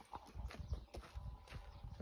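Footsteps on bare dirt ground, a faint irregular run of soft thuds with light clicks.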